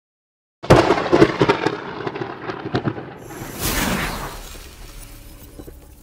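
Logo-reveal sound effect: a run of sharp booming hits starting just after half a second in, then a swelling whoosh about three and a half seconds in that fades away and cuts off at the end.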